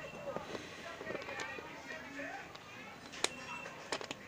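Faint background voices and music, with two sharp metallic clicks near the end as the fasteners on a motorcycle seat's metal bracket are worked loose by hand.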